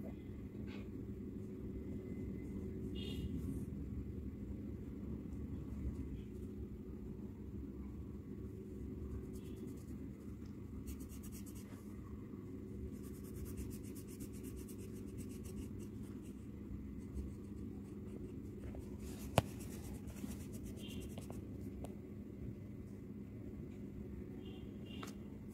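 Colour pencil scratching on paper in short, repeated strokes, over a steady low hum. One sharp click stands out late on.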